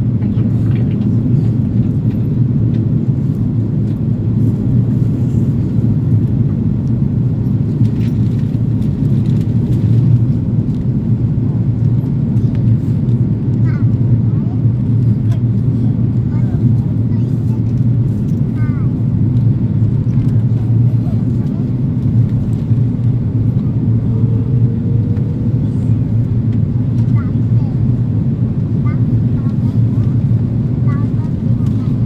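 Steady low cabin noise of an Airbus A330-300 on descent, airflow and its Rolls-Royce Trent 772B engines heard from a window seat inside the cabin, with a brief faint rising tone about two-thirds through.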